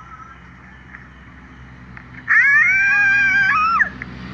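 A young child's loud, high-pitched wailing cry, held for about a second and a half from about two seconds in, dropping in pitch as it ends.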